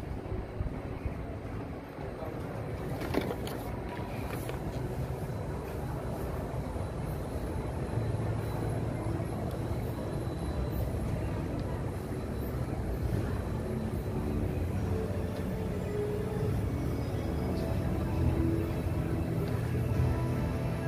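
Steady low background noise of a busy walkway, with faint music coming in during the second half.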